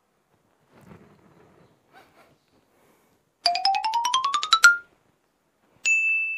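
A quick run of about a dozen short electronic notes climbing steadily in pitch over about a second, ending on a held note, followed near the end by a single steady high beep. Faint rustling comes before the notes.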